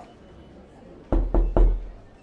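Three knocks in quick succession, about a quarter second apart, starting about a second in, each with a dull, heavy thump.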